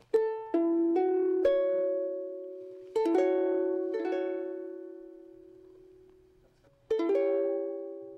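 Ukulele sounding an A6 chord: its strings plucked one at a time, then the full chord strummed about three seconds in and again near the end, each time left to ring out and fade.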